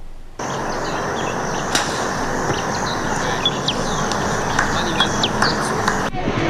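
Outdoor field ambience: a steady wash of background noise with small birds chirping repeatedly over it, starting abruptly just under half a second in.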